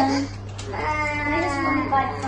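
Toddler crying: a short cry, then a long, drawn-out wail from about half a second in. The child is cranky from lack of sleep.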